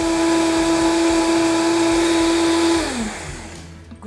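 Countertop blender running at high speed, blending almonds, dates and water into almond milk: a steady motor hum that is switched off about three seconds in, its pitch falling as the motor winds down.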